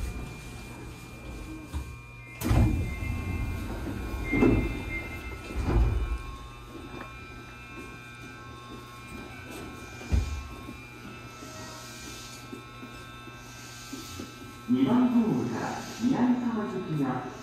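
Sapporo subway car doors sliding open at a station stop. The sound comes in suddenly about two and a half seconds in, followed by two more surges and a short knock. A voice announcement starts near the end.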